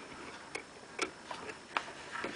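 Faint sharp clicks, roughly two a second and not quite even, over quiet room tone.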